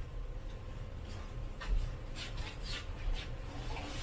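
Quiet room with a few faint, short, hissy rustles from two people handling ceramic matcha bowls, turning them in their hands and starting to drink from them.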